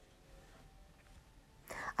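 Near silence: faint room tone, then a woman's breathy intake and voice coming in near the end.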